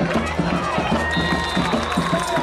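A school band playing in the stands, with a fast, steady drum beat of about five strokes a second and long held high notes that come in about a second in. Crowd voices sound underneath.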